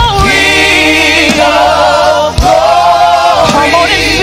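Gospel praise team of several voices singing a slow worship song in harmony, holding long notes with vibrato over instrumental backing. There is a short break for breath a little past halfway.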